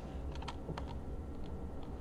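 Computer keyboard typing: several separate key presses, spaced irregularly.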